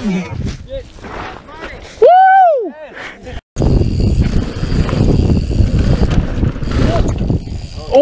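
Mountain-bike crash into a dirt bank: scattered knocks and scuffing, then a loud drawn-out shout lasting under a second. After a sudden cut, a mountain bike rolling fast down a dirt jump trail, with wind rumbling on the helmet camera's microphone.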